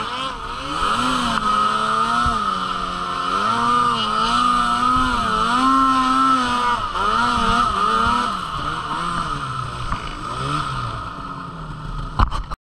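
Arctic Cat M8000 snowmobile's two-stroke twin engine revving hard and dropping back over and over, its pitch rising and falling about once a second. The revs settle lower near the end.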